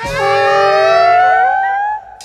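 Free-improvised jazz: several held wind notes sounding together, one gliding slowly upward while another slides down, starting together and breaking off just before the end.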